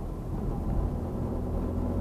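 A car driving along a road, heard from inside the cabin: a steady low rumble of engine and tyre noise.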